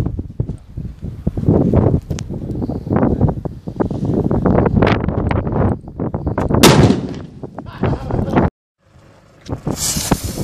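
Wind buffeting the microphone, then one loud firecracker bang from a Cobra 6 banger about two-thirds of the way in, with an echo after it. The sound cuts off suddenly, and near the end a fuse starts to hiss as it burns.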